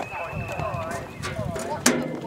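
Hoofbeats of a cantering horse on a sand arena surface, heard as irregular low thuds, with a sharp knock near the end.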